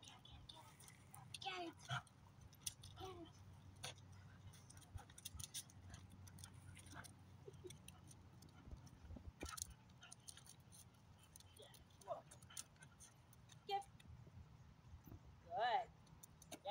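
Quiet outdoor ambience: a steady low hum, scattered light clicks and a few brief, soft voice-like sounds, the loudest shortly before the end.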